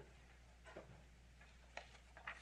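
Near silence: low room hum with three faint, short knocks about a second apart, footsteps on a carpeted stage.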